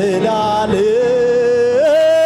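Church worship singing with accompaniment: a voice holds one long note, then slides up to a higher note near the end.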